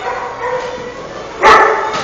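A dog barks once, loudly, about a second and a half in, the bark echoing briefly.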